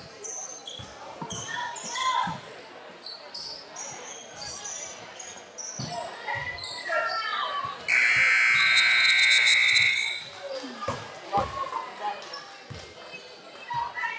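Basketball game on a hardwood gym floor: sneakers squeaking and the ball bouncing, with voices in a large echoing hall. About eight seconds in, a loud steady tone sounds for about two seconds.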